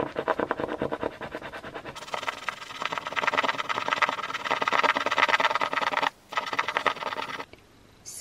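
A coin scratching the gold scratch-off coating from a card postcard, in fast back-and-forth strokes. It gets louder about two seconds in, breaks off for a moment a little after six seconds, and stops shortly before the end.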